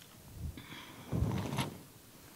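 Brief handling noise: a soft low thump about half a second in, then a short rustle and bump a second later, as a bundle of fresh evergreen sprigs is moved and picked up.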